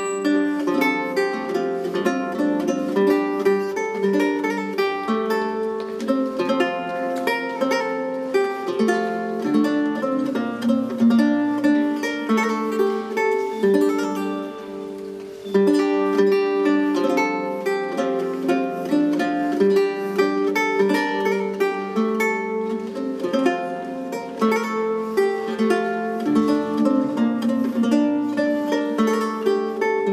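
Solo Renaissance lute played fingerstyle, plucking a Scots tune of melody over a bass line in a steady run of ringing notes. The playing softens briefly just before the middle, then comes back louder.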